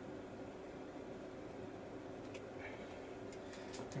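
Quiet steady hiss with a few faint, light clicks of a hand working a cable connector off a TV power supply board, mostly in the second half.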